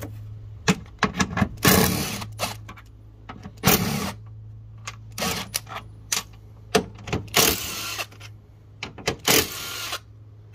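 Cordless impact driver running in about five short bursts, backing out the bolts that hold the plastic air intake housing, with small clicks and knocks of the socket and parts between the bursts.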